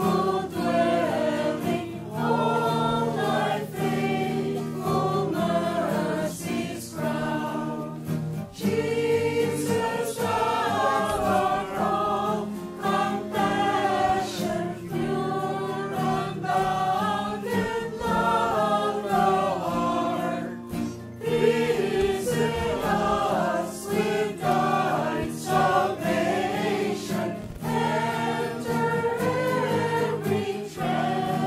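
Choral religious music: a choir singing a hymn over steady sustained accompaniment, without a break.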